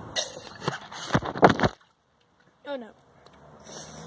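Lemonade being drunk straight from a plastic bottle: a few knocks and loud gulping, slurping noises that cut off abruptly a little under two seconds in.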